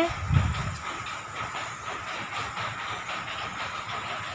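Wind of a storm blowing up, rushing through the trees as a steady noise, with a gust buffeting the microphone about half a second in.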